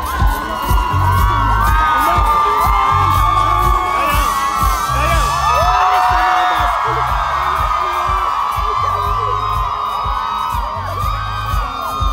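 A live concert crowd screaming and cheering over loud band music, with a bass beat recurring roughly once a second.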